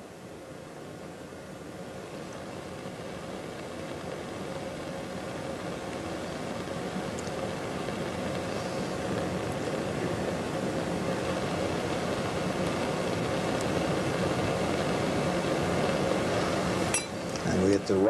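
Steady background room noise with a faint hum, slowly growing louder throughout, and a single sharp click near the end.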